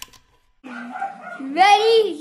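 A young woman's voice making drawn-out, wordless vocal sounds that start about half a second in, their pitch sweeping up and then falling, loudest near the end.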